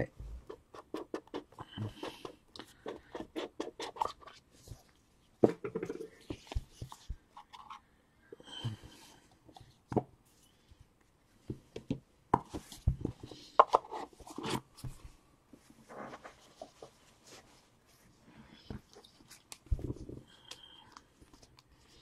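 Cardboard trading-card boxes and cards being handled by hand: scattered light clicks, taps and scrapes, with a few sharper knocks and brief faint squeaks.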